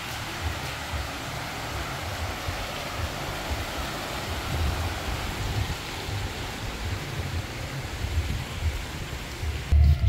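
Water splashing from a fountain's rows of small jets: an even hiss that thins somewhat near the end, over an uneven low rumble.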